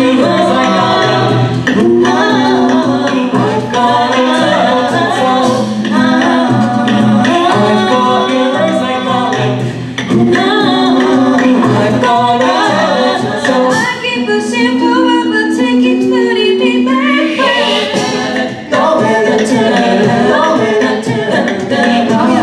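Amplified six-voice a cappella group singing a pop cover: sustained low harmony chords under a moving lead melody. A few seconds past the middle the low chords thin out and the texture lightens, then the full chords return.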